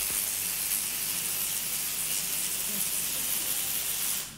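Spark-gap transmitter driving a 250,000-volt high-frequency transformer, its sparks and crown of discharges giving a steady, even hiss.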